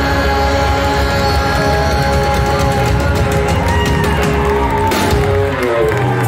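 A live rock band, with electric guitar, bass and drums, playing loud held chords over a dense low end. About five seconds in there is a drum hit, and the notes slide downward near the end.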